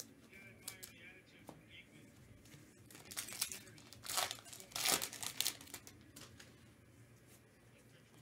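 A trading-card pack's wrapper being crinkled and torn open by hand, in a few short bursts from about three seconds in, loudest near five seconds.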